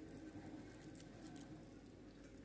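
Faint, soft patting and squishing of a hand rubbing spice mix into raw fish pieces in a steel bowl.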